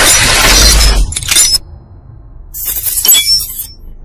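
Sound effects of an animated channel-logo intro: a loud, dense rush for the first second, then two short bursts of glass-like shattering and tinkling, about a second and a half apart.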